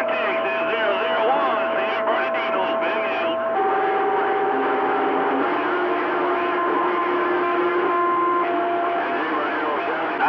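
CB radio receiver audio on channel 28: the garbled, overlapping voices of several stations transmitting at once, over steady whistling tones from clashing carriers. The whistles change pitch a few times, about a third of the way in and again past halfway.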